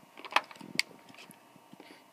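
Two sharp clicks in the first second, the first the louder, with a faint scrape between them: a plastic rotary cutter and acrylic quilting ruler being handled on a cutting mat.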